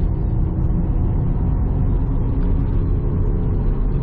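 Subaru BRZ's FA20 flat-four engine and road noise heard from inside the cabin while driving, a steady low drone at an even speed.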